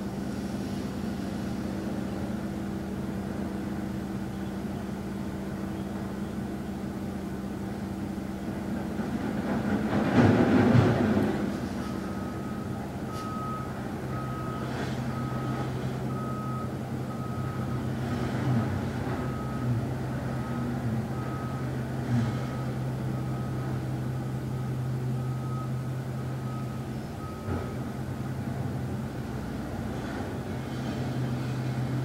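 Truck's reversing alarm beeping at an even pace, a bit over once a second, for most of the second half, over the low steady hum of its engine. A louder rush of noise comes just before the beeping starts, about ten seconds in.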